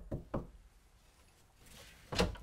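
Knocking on a door: three quick knocks in the first half second.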